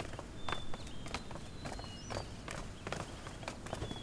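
Footsteps of several people walking on a wooden floor, their shoes clicking in an irregular patter of single sharp steps.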